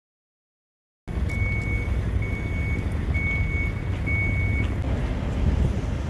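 A vehicle's reversing alarm beeps four times, about once a second, over a steady low rumble. The sound cuts in suddenly about a second in.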